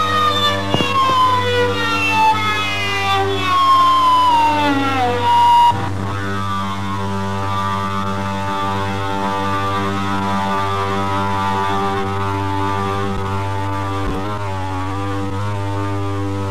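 Amplified rock-band drone closing a song: a pitched, harmonic-rich tone slides steadily downward over the first five or six seconds and breaks off, then a steady droning chord with a low hum beneath it holds for the rest.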